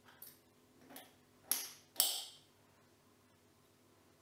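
Glass lid being set onto a filled Weck jar over its rubber ring: a couple of light taps, then two sharper glass clinks about one and a half and two seconds in, the second ringing briefly.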